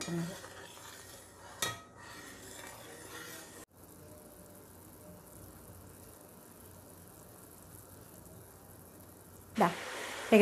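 Herbal hair oil bubbling and sizzling in a brass pot over a gas flame while a metal ladle stirs it, with a single clink of the ladle against the pot about two seconds in. After a brief break the oil goes on sizzling steadily and faintly.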